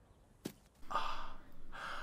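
Two long, breathy, swooning sighs, one after the other, the first the louder, after a soft click about half a second in.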